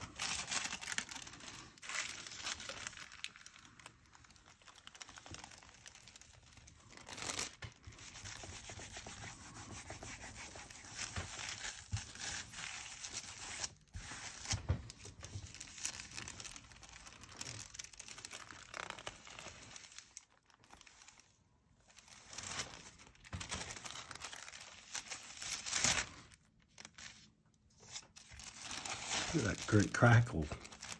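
Thin wet-strength tissue paper rustling as a hand rubs and presses it onto a paint-covered gel plate, then peeled up off the tacky plate just before the end, the loudest part.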